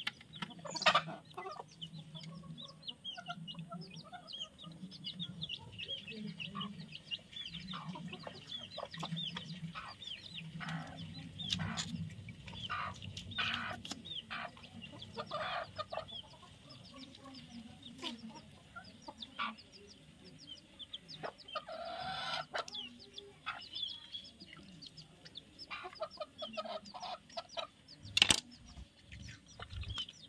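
Chickens clucking with small birds chirping throughout, over occasional sharp knocks and scrapes of a knife on a wooden chopping block as a fish is cut up. The loudest knocks come about a second in and near the end.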